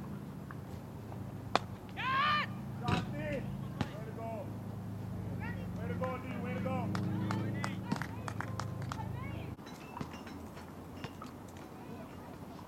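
Cricket bat striking the ball with a sharp crack about a second and a half in. Shouts and calls from players across the field follow, with a steady low hum underneath that cuts off about nine and a half seconds in.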